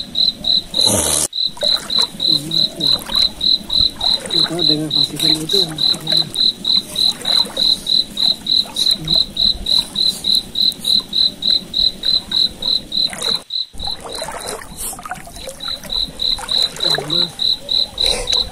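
A cricket chirping in an even, high-pitched pulse, about three chirps a second, the loudest sound throughout, with a brief break about thirteen seconds in.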